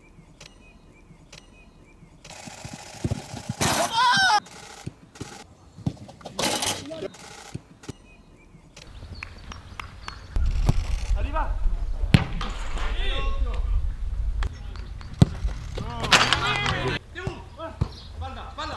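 Footballs being struck on a grass training pitch: short sharp thuds from kicks and passes, the loudest about twelve and fifteen seconds in, mixed with players shouting calls during the drill.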